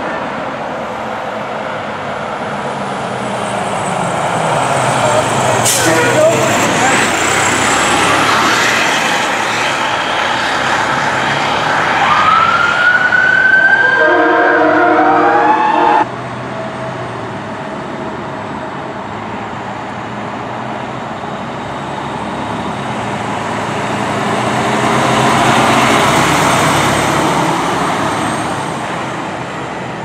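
Fire engines responding: a siren sweeping up and down with a truck engine, and a few seconds of steady horn blasts that cut off abruptly at an edit. Afterwards a second fire engine's engine and siren are heard as it drives off through traffic.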